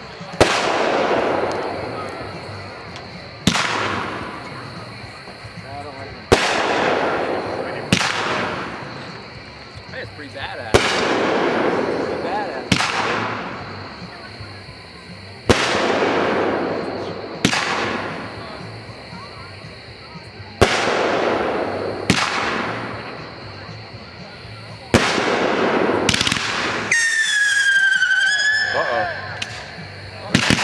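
Aerial firework shells bursting one after another, about eleven sharp bangs every two to three seconds, each trailing off in a fading rumble. Near the end a wavering, slightly falling whistle sounds for about two seconds.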